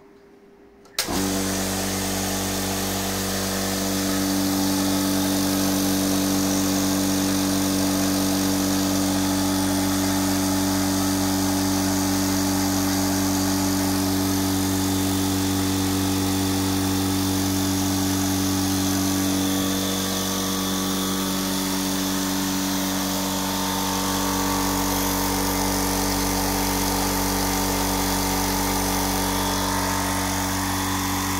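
VEVOR 2-1800F35 twin-cylinder oil-free air compressor switched on about a second in, starting abruptly and then running steadily with an even hum. Its tone shifts slightly about twenty seconds in.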